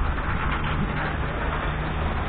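Steady city street noise: traffic running, with a low hum underneath.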